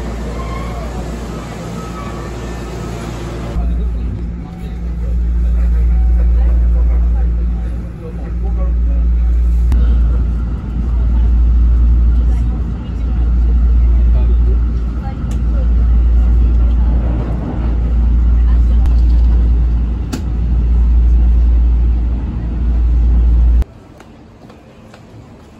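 Hankyu commuter train: a station platform with voices for the first few seconds, then the low rumble heard from inside the moving train, rising and falling in waves about every two seconds. It cuts off suddenly near the end.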